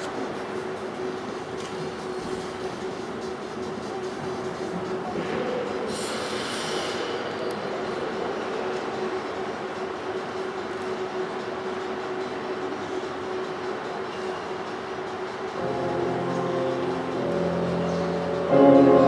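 Steady background noise of an ice arena with a constant low hum, and a short hiss about six seconds in. Near the end the skater's program music begins softly.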